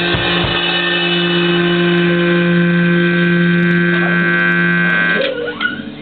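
A rock band's final chord: an electric guitar chord held and ringing out, with a couple of drum hits at the start, cut off sharply about five seconds in.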